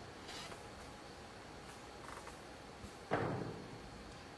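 Hushed snooker-arena room tone with a few faint ticks, then one sudden thump about three seconds in that dies away within half a second.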